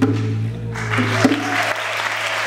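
A live band's final chord ringing out on electric bass and keyboards as the percussion stops, with audience applause breaking in under a second in and carrying on while the chord fades.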